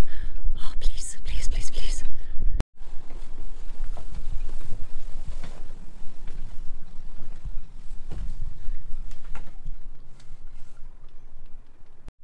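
Gusty wind buffeting the microphone with a fluttering rumble for the first two and a half seconds, cut off abruptly. Then a steadier rushing noise with light knocks and rustling for the rest.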